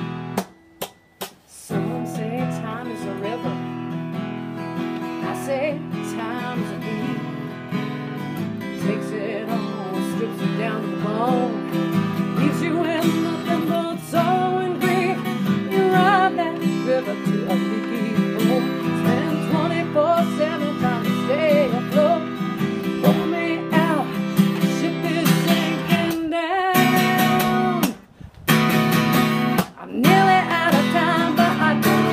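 A woman singing while strumming chords on a steel-string acoustic guitar. The sound cuts out briefly twice, about a second in and near the end.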